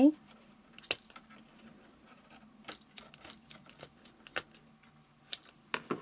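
Scattered light clicks and taps of hands handling small fabric flowers on a craft work surface, over a faint steady low hum.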